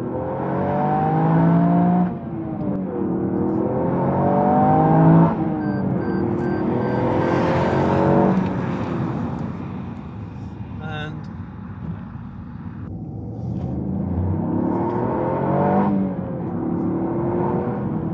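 Toyota GR Yaris's 1.6-litre turbocharged three-cylinder engine accelerating hard through the gears. The revs climb and then fall away at upshifts about 2 and 5 seconds in. It eases off for a few seconds, then pulls up through the revs again to another shift near the end.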